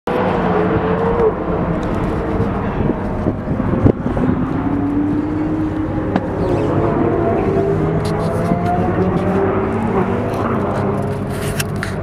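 Ferrari sports cars' engines running at speed on a race track, several engine notes rising and falling in pitch as the cars accelerate and lift.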